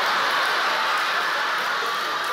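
An audience laughing together, a steady wash of many voices with no single voice standing out.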